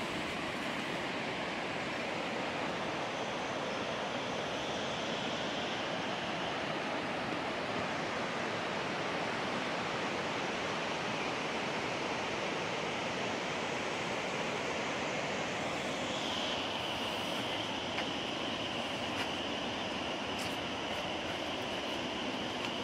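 Steady rushing of water in the valley below, an even hiss without breaks. About two-thirds of the way through, a steady high-pitched buzz joins it, with a few faint clicks near the end.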